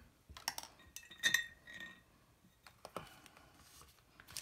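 A few light clicks and taps of art supplies being handled on a tabletop, with one sharper clink just after a second in that rings briefly; a small plastic cup is being set down among glass ink bottles.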